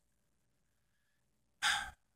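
A man's short, audible breath near the end, after more than a second of near silence.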